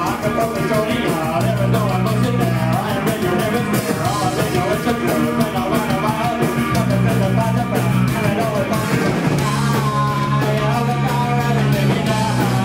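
Live punk rock band playing loud and fast: electric bass and guitar holding low notes in stop-start blocks, a drum kit with rapid, steady cymbal hits, and a singer's voice over the top.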